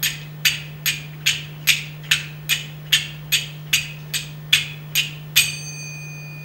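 Small hand percussion struck in a steady beat: about fourteen sharp, evenly spaced clicks at between two and three a second. The last stroke rings on with a clear bell-like tone for more than a second.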